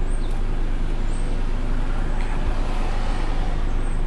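Steady road noise heard from inside a moving car: a low rumble of engine and tyres.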